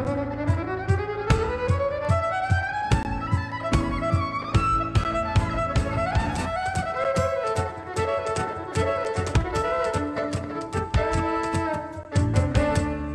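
Live folk-rock band playing an instrumental break led by a fiddle, whose line climbs in pitch over the first few seconds, over strummed acoustic guitar and a steady hand-played cajon beat.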